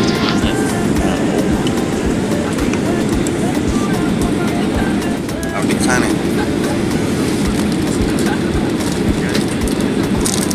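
Steady, loud low roar of an airliner cabin in flight on its descent to land: engine and airflow noise.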